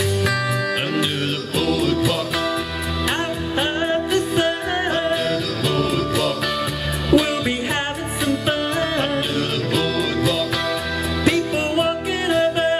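Live band music: an electric guitar playing with singing over it, continuous and steady in level.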